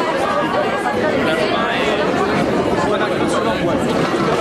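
Crowd chatter: many people talking over one another, no single voice standing out.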